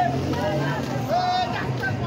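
Speech: a person talking continuously over a steady background noise.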